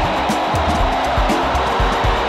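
Background music with a steady low beat, mixed with a large crowd cheering.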